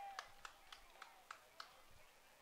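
Near silence with a faint, evenly spaced run of about six sharp taps, roughly three a second, that stops shortly before the end.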